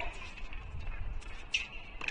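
Tennis ball struck by racquets in a baseline rally: a sharp hit right at the start and the return from the far end about a second and a half later, with short high squeaks of tennis shoes on the hard court.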